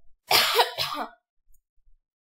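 A person coughing: a harsh burst about a third of a second in, with a shorter second one right after.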